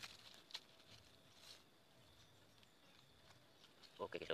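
Near silence, with faint rustling and a few soft clicks, mostly near the start, from hands handling forest soil and leaf litter while picking a wild mushroom, over a faint steady high tone.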